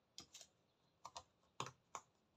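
Faint clicks and taps of small jigsaw puzzle pieces being handled and pressed into the puzzle's tray, about half a dozen light clicks in quick pairs.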